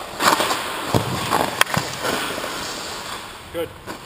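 Hockey goalie's skate blades scraping and carving across the ice as he pushes and recovers in a movement drill, with two sharp knocks of gear on the ice about one second and one and a half seconds in.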